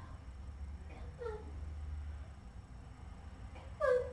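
A cat meowing twice: a short falling meow about a second in and a louder one near the end.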